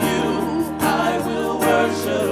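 A gospel vocal group singing live with band accompaniment and a steady beat.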